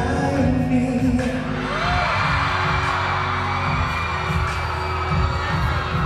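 Closing bars of a live pop ballad over an arena sound system: a deep throbbing bass and held chords with no singing. Crowd noise swells in from about two seconds in.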